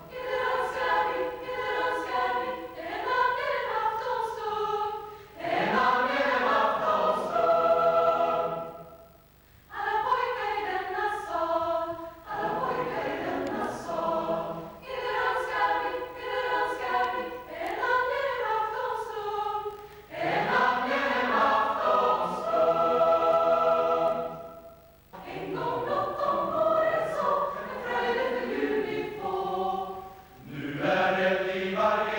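Youth choir of boys and girls singing together in long phrases, with brief breaths between them, the clearest about nine seconds in and again near twenty-five seconds.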